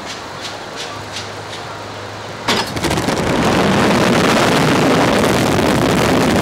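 Wind rushing over the onboard microphone of a Slingshot reverse-bungee ride capsule as it is launched, starting suddenly about two and a half seconds in and staying loud. Before the launch there are a few short ticks over a low hum.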